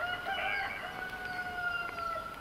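A rooster crowing: one long, held call that falls away near the end.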